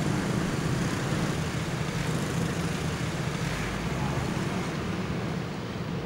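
Steady city street traffic noise, a continuous wash of motorbike and car engines.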